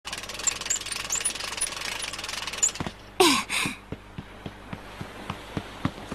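Cartoon sound effects: a fast, dense rattling clicking for nearly three seconds, then two loud short bursts a little after three seconds in, then light ticks at about four a second, like quick soft footsteps.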